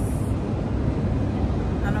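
Steady low rumble of airport baggage-hall background noise, with a brief rustle at the start.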